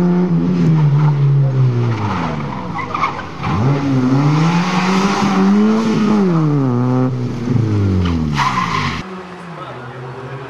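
Fiat Cinquecento's engine driven hard through a cone course: the revs fall away, climb again from about a third of the way in, then drop once more. A short burst of tyre squeal comes near the end.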